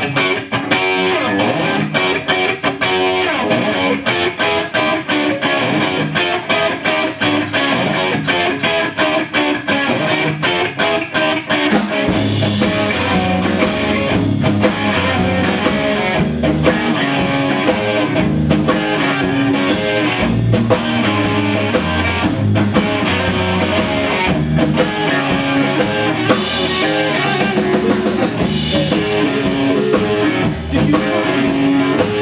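A rock band playing a song live: distorted electric guitars and a drum kit. About twelve seconds in, the low end fills out as the full band kicks in harder.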